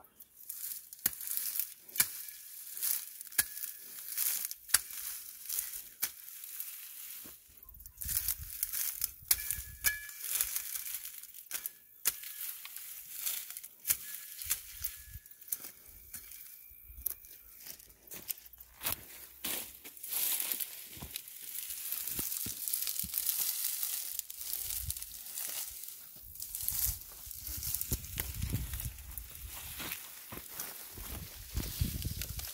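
Dry grass and dead weed stalks crackling and tearing as they are pulled up and gathered by hand, in irregular rustling bursts.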